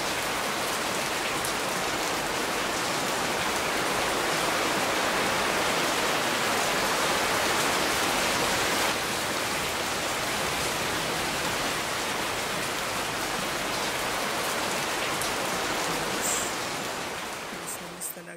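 Steady rain falling, a continuous even hiss that fades out over the last couple of seconds.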